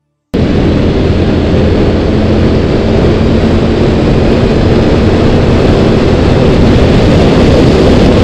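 Loud, steady roar of wind buffeting the microphone, mixed with engine noise from a quad bike riding at speed on a road. It starts suddenly about a third of a second in.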